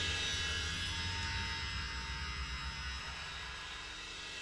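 The band's final chord and cymbal crash ringing out, slowly dying away, with a low held note underneath.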